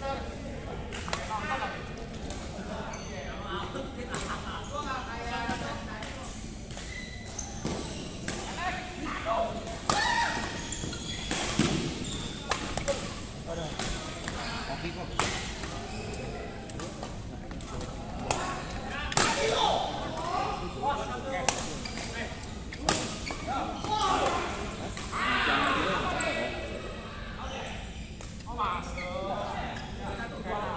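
Badminton rackets striking a shuttlecock during a doubles rally: sharp cracks at irregular intervals, ringing in a large hall, with people's voices talking and calling out at times.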